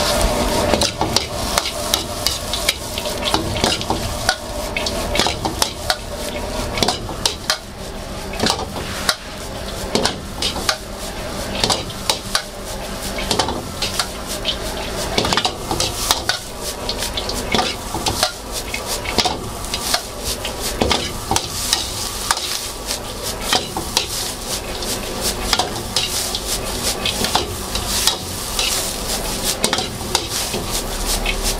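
Metal ladle scraping and striking a steel wok as fried rice is stir-fried, over a steady sizzle. The clanks come several a second in uneven runs.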